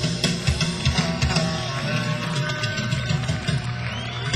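Live country-rock band playing an instrumental passage, guitars over drums.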